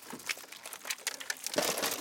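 Plastic bag crinkling and rustling as it is handled, in a run of short scrapes that is loudest near the end.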